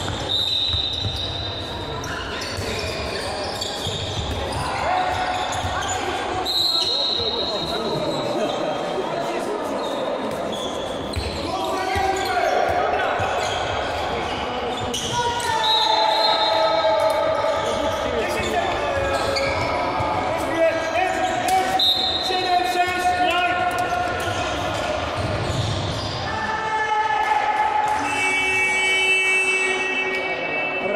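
Handball game in a large sports hall: the ball bouncing on the court, with players' shouts and calls echoing in the hall.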